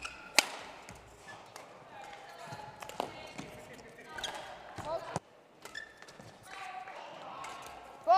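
Badminton doubles rally: rackets striking the shuttlecock in sharp cracks, the loudest about half a second in. Short rubber shoe squeaks come off the court floor as the players lunge, one pair just before five seconds in.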